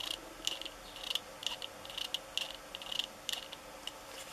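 Light, irregular plastic clicks and ticks, several a second, from a small 3D-printed resin model of a KingSong S18 electric unicycle as its parts are handled and shifted in gloved fingers.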